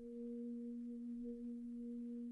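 A single steady held note, low and nearly pure with one faint overtone, sustained for about two and a half seconds without singing.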